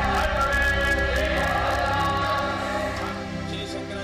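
Background music: a choir singing long held chords over a steady low drone.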